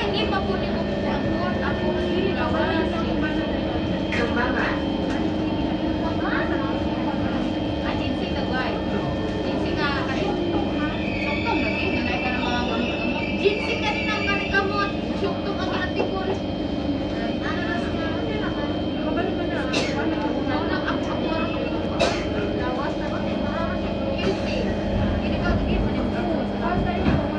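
Inside an MRT train carriage at a station: a steady hum of the train's running equipment, with passengers talking in the background and a few short clicks.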